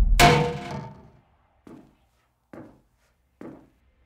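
Audio-drama sound effect of a sudden heavy thunk that rings and fades over about a second, followed by three faint short sounds less than a second apart. The thunk is meant as a raven striking or landing nearby.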